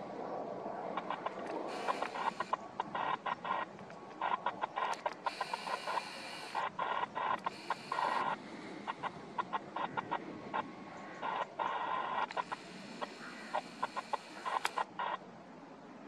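Chickens clucking in quick runs of short calls, with a few longer, drawn-out calls among them.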